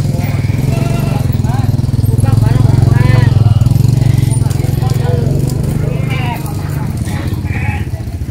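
A small engine running steadily, swelling louder in the middle and easing back, with voices in the background.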